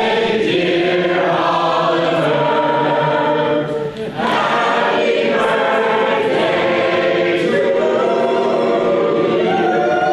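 Several voices singing a slow tune together in harmony, holding long notes, with a short break for breath about four seconds in.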